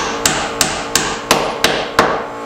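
Hand hammer nailing into wooden wall framing: six even strikes, about three a second, over a steady background hum.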